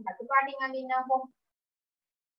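A high-pitched voice saying a short, drawn-out phrase that lasts about a second and a quarter.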